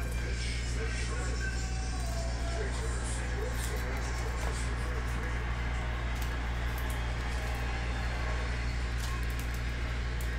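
A steady low electrical hum, with faint wavering voice-like sound in the background and a few soft ticks as trading cards are handled.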